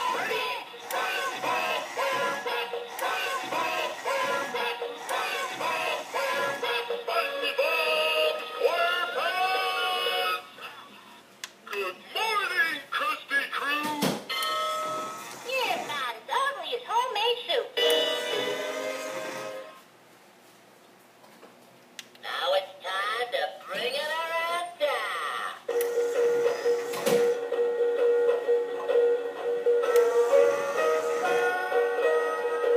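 SpongeBob SquarePants spinning toy clock playing its built-in music with voices, broken by a pause of about two seconds partway through and ending on a held note.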